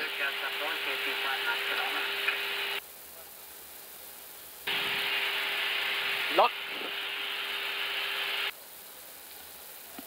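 Hiss of an open cockpit headset audio channel with a steady hum, switching off about three seconds in, back on a couple of seconds later, and off again near the end.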